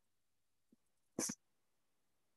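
A single short breath noise, like a sniff, from a man, lasting about a sixth of a second just past the middle, with dead silence from a call's noise gate around it.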